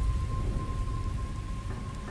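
Heavy rain falling steadily, with a deep rumble of thunder that slowly fades. A thin steady high tone runs underneath.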